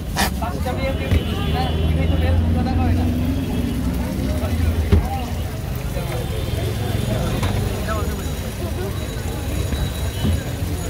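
Street ambience: a steady low rumble of road traffic with people talking in the background, and a couple of short knocks.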